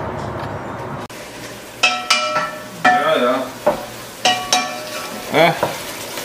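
A wooden spoon stirring chunks of stewing beef, carrot and onion in a white coated pot, in four separate strokes about a second apart, with the stew sizzling. A steady hiss fills the first second.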